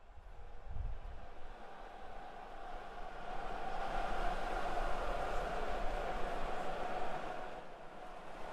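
Recorded city noise played back by the interactive installation as hands press into its stretchy surface: a steady rumble and hiss. It fades in at the start, grows louder over the first few seconds and eases a little near the end.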